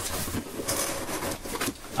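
Cardboard shipping box being handled: the flaps and packing rustle and scrape irregularly as hands work inside it.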